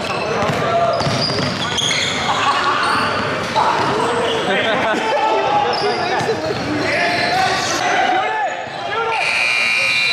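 Live pickup basketball game in a large, echoing gym: a basketball bouncing on the hardwood, short high squeaks, and players' voices calling out. A steady high tone sounds near the end.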